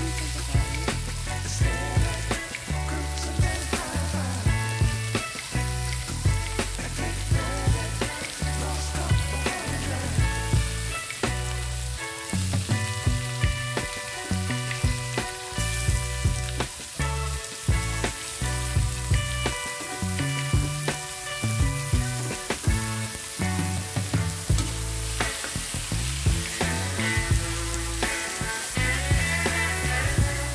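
Ground pork and sautéed onions sizzling as they fry in a wok, stirred with a metal ladle, under background music with a steady beat.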